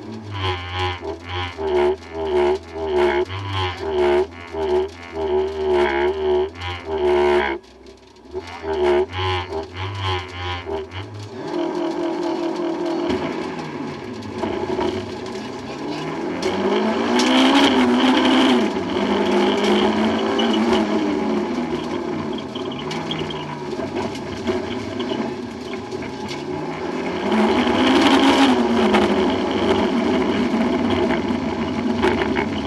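MG ZR rally car heard from inside the cabin: a pulsing drone for the first ten seconds or so, then from about twelve seconds in the engine runs continuously, its pitch sweeping up and down as it revs through the gears.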